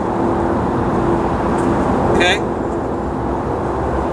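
Steady outdoor background rumble with a faint constant hum running underneath.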